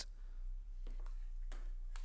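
A few faint, irregular clicks as a vintage wristwatch is handled by its strap and case, over a steady low hum.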